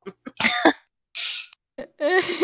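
A person coughing a few short times, then a brief breathy hiss.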